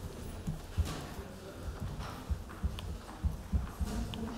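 Irregular dull thuds and knocks, roughly one every half second to a second, from people moving about a wooden stage and the podium, picked up by the podium microphone.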